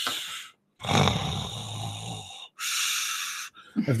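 A man imitating snoring: a rasping snore with a low rattle starting about a second in, then a hissing breath near the end, with short gaps between.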